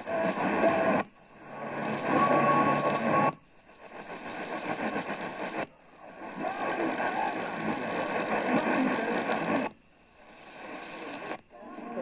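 AM radio receiver, an Eton Elite Field, scanning up the medium-wave band: each stretch holds distant AM stations' audio in hiss and static, and the sound cuts out briefly four or five times as the tuner steps to the next frequency.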